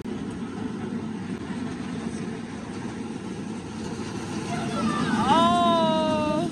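Steady drone of an inflatable bounce slide's air blower, with a child's single long, high-pitched shout about five seconds in.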